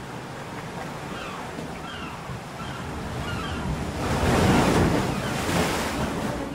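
Ocean surf washing onto a beach. It swells to its loudest about four seconds in as a wave breaks. Faint short high calls sound several times in the first half.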